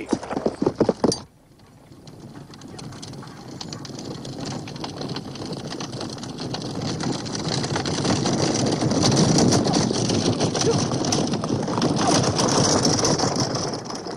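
Horses' hooves and chariot wheels on the move, starting faint about a second and a half in and building steadily louder over several seconds as they come closer, then holding loud.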